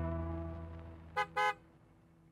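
Intro music's last chord dying away, then two short car-horn toots in quick succession a little over a second in.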